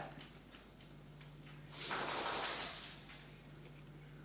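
Plastic measuring spoon scraping through powdered peanut butter in its jar and tipping it into a blender cup of ice: one soft, rustling scrape lasting about a second, starting near the middle.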